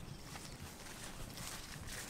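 Footsteps of a person walking over orchard ground, a few uneven steps.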